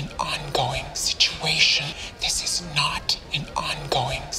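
Speech only: a woman speaking a line of dialogue.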